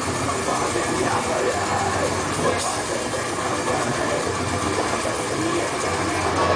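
Technical death metal band playing live, with distorted electric guitars and bass over fast drums. It comes through as a dense, steady, overloaded wall of sound picked up by a camera microphone in the crowd.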